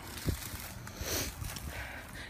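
Uneven low rumble of wind and handling noise on a handheld phone microphone, with a light knock shortly after the start and a brief hiss about a second in.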